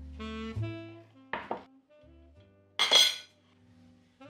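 Background music with a melodic line, over which crockery clatters twice, briefly about a second and a half in and louder about three seconds in, as a ceramic serving plate is handled and set down on a wooden board.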